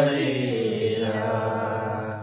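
A group of voices singing a Nepali song together without instruments, holding one long drawn-out note.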